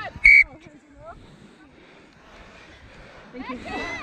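A referee's whistle gives one short, sharp blast about a quarter second in, stopping play after a tackle, likely for a penalty. Faint voices of players and onlookers follow, and a nearer voice comes in near the end.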